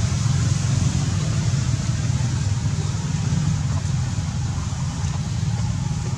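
A steady low engine rumble with a hiss over it, running without a break.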